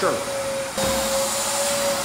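Wet vacuum running steadily with a constant high motor whine, sucking up the stripper slurry of old floor wax from vinyl composition tile. The pitch dips briefly a little before the middle.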